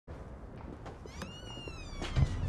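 A cat meowing once, starting about halfway in: one drawn-out call that rises and then slowly falls.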